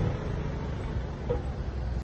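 Vespa scooter engine fading as the scooter rides away down the street, heard as a gradually dropping mix of engine and road noise.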